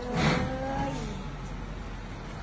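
Large box truck's engine running as it drives up, with a tone that rises slightly in pitch over the first second and a louder burst near the start.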